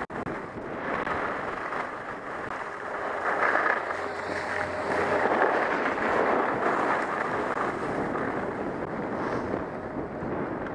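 Wind buffeting a skier's body-worn camera microphone while skiing downhill, mixed with skis sliding over snow; the noise swells in the middle as speed picks up, then eases as the skier slows.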